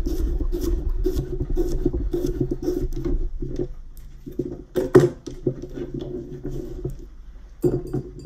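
Chef's knife slicing cucumber on a wooden cutting board: a quick run of cuts tapping the board over a steady low hum, easing off after about three and a half seconds, with one louder knock about five seconds in.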